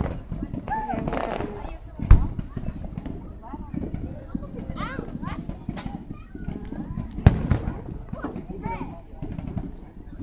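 Aerial fireworks shells bursting: two loud booms about two and seven seconds in, with smaller pops between them.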